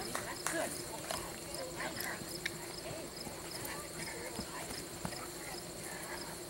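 Insects chirping in an even, high-pitched rhythm of about two chirps a second over a steady high buzz, with faint distant talk behind.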